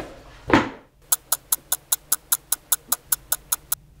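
A single short dull sound about half a second in, then, after a brief silence, rapid and perfectly even ticking, about five ticks a second, lasting nearly three seconds and stopping just before the end.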